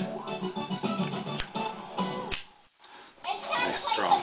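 Television audio: music with voices over it, breaking off briefly a little past halfway.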